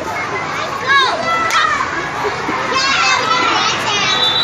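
Children's voices: high-pitched calls and chatter from a crowd of children, with a sharp rising-and-falling shout about a second in and more voices near the end, over a steady background hubbub.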